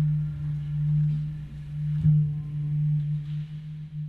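A single low ringing note held from an instrument in an improvised meditative piece, struck again about two seconds in and sustaining as the music closes.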